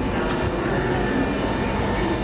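Steady, unbroken noise of a railway station platform with a train at it.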